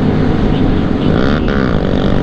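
Motorcycle engine running at highway speed under steady wind and road rumble, heard from the rider's position; the engine note dips and climbs again about a second and a half in.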